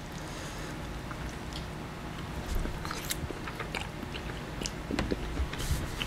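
People eating spaghetti: faint chewing and a few light clicks of forks on plates, over a steady low room hum.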